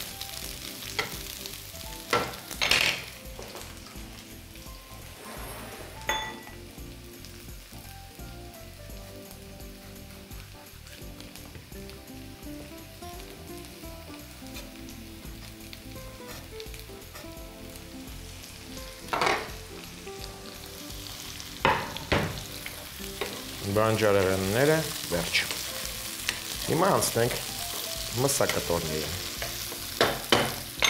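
Food frying in a pan on a stovetop with a steady sizzle, with a few sharp knocks of kitchen utensils along the way.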